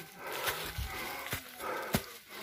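Footsteps on dry leaf litter and twigs, a few sharp cracks among a crackling rustle, with an animal calling in the background.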